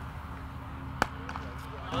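A single sharp crack of a willow cricket bat striking the ball about a second in, a clean full-blooded hit counted as a six in a range-hitting contest. A steady low hum sits underneath.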